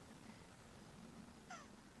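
Near silence, with one faint, short animal call falling in pitch about a second and a half in.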